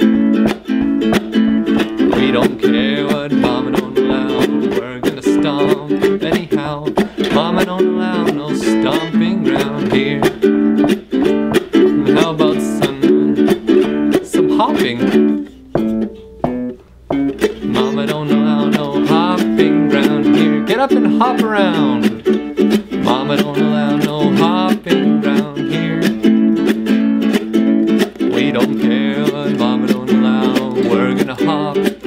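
Ukulele strummed in a steady rhythm, with a brief pause about halfway through before the strumming picks up again.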